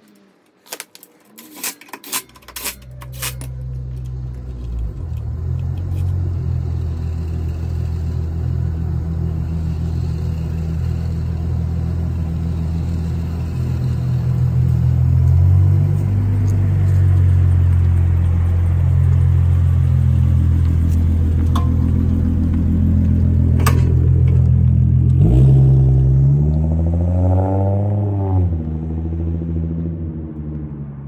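Ford Mustang engine running steadily, growing louder over the first few seconds, then revved once near the end, the pitch rising and falling. A few sharp metallic clicks come first, as the wheel's lug nuts are fitted.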